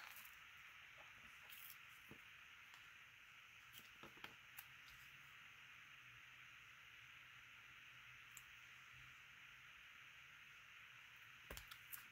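Near silence: faint steady room hiss, with a few soft clicks from tape and card being handled, around four seconds in and again near the end.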